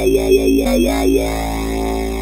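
FM synthesizer bass voice, the 'Crusher Bass MW' preset of the FM Essential app, played from the keyboard: a low held note whose tone wobbles and growls through about the first second, then settles into a steady sustained drone.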